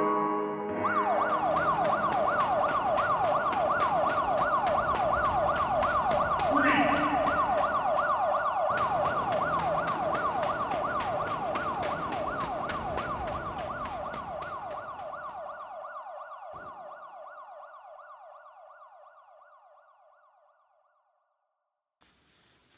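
Emergency-vehicle siren in a fast yelp, its pitch sweeping rapidly and repeatedly, slowly fading out to silence near the end. The music stops about a second in as the siren takes over.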